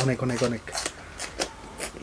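Short crisp crunches of someone chewing crunchy food, about four of them, after a brief bit of speech.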